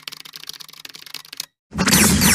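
Typing sound effect: a rapid run of keyboard-like clicks as on-screen text types in, stopping about one and a half seconds in. After a brief gap, a loud, noisy glitch-transition sound effect starts just before the end.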